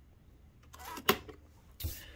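Plastic clicks from handling a JVC top-loading VHS deck and its pop-up cassette compartment: a short rustle, a sharp click about a second in, and another knock near the end.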